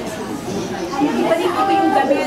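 Several people talking over one another in a large room. A nearer voice comes in louder about a second in.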